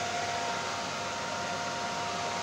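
Egg incubator's circulation fan running: a steady whirring rush with a faint, even hum.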